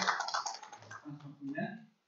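Audience applause dying away into a few scattered claps, with a few words spoken over the end of it.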